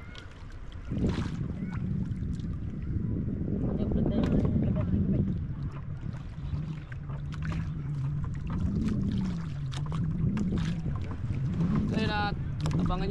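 Wind buffeting the microphone over water sloshing against a small wooden outrigger canoe, with scattered knocks and splashes against the hull.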